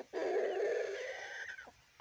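A chicken's raspy, drawn-out call lasting about a second and a half.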